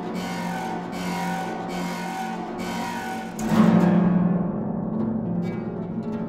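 Concert harp played solo: short repeated figures of plucked notes, then, about three and a half seconds in, a loud low accent that rings on and dies away slowly.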